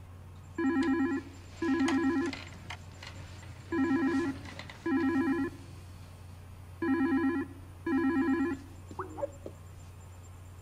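Incoming video-call ringtone on a computer: a warbling double ring, repeated three times, over a steady low hum.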